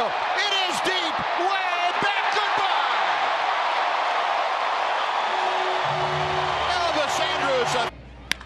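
Ballpark crowd cheering a home run, a dense roar with voices shouting over it in the first few seconds. About two-thirds of the way through, steady held musical tones from the stadium join the cheering, and the sound cuts off suddenly just before the end.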